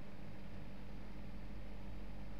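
Steady low background hum and hiss with no distinct events: room tone of a recording set-up.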